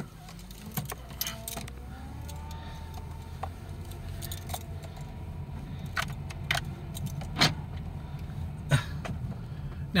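Steady low rumble of a car's engine and tyres heard from inside the cab while driving slowly, with scattered light clicks and jingles like keys swinging on the ignition ring.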